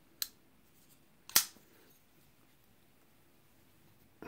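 Metal click of a Rough Ryder bearing-pivot flipper knife's blade being worked: a faint click just after the start, then a sharper snap just over a second in.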